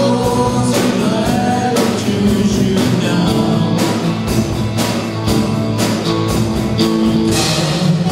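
Live praise band playing a worship song: guitars and drums with voices singing into microphones, at a steady beat.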